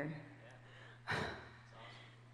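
A woman's audible sigh into the microphone about a second in, with a soft 'yeah', over a low steady hum.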